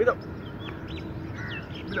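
Birds chirping: a string of short, high, quick calls scattered throughout, over a faint steady hum.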